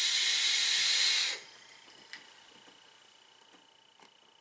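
A long drag on a vape: steady hiss of air drawn through the tank's airflow, stopping abruptly about a second and a half in, followed by a faint click.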